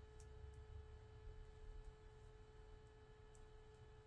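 Near silence: room tone with a faint, steady pure tone held throughout.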